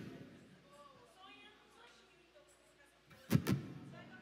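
Two sharp knocks about a fifth of a second apart near the end, over a faint voice in the background: handling noise from the guitar or stage gear, picked up through the stage microphones.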